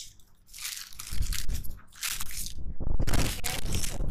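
Rustling and crunching from gardening materials being handled, in several bursts with a low rumble beneath.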